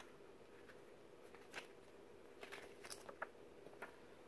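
Near silence: room tone with a faint steady hum, and a few faint ticks and rustles from the paper pages of a CD booklet being handled.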